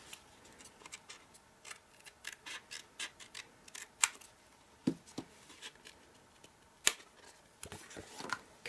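Scissors snipping through card stock, trimming off the excess in a series of short, irregular cuts, with louder snips about four and seven seconds in.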